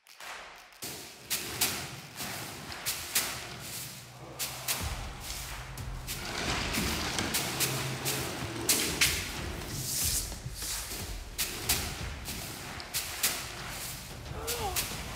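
A salu (coconut-midrib broom) sweeping briskly over a wooden floor, a run of irregular swishing strokes. A low steady rumble joins in from about five seconds in.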